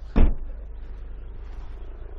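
The tailgate of a Suzuki Swift hatchback being shut: one loud thud just after the start.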